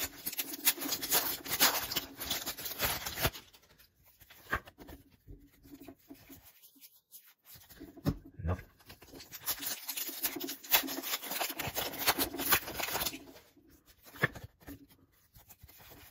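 Foil booster-pack wrapper crinkling and tearing as it is ripped open and handled, in two spells of crackling: one over the first three seconds or so, and another from about eight to thirteen seconds in.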